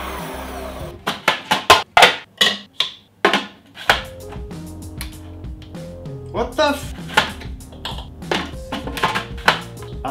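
An electric food processor's motor runs and cuts off about a second in. Background music with a beat and sustained notes follows.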